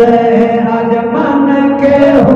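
Men's voices chanting a Saraiki naat into microphones. They hold long sustained notes, with one step in pitch about a second in.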